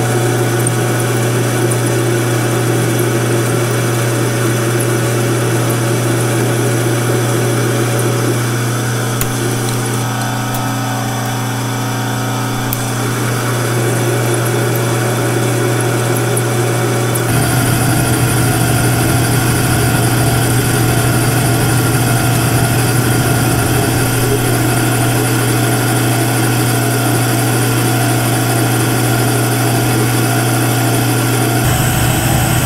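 Metal lathe running with a steady hum, turning a nut blank in its chuck while the cutting tool shapes its outside. About two-thirds of the way through the sound steps up, louder and hissier.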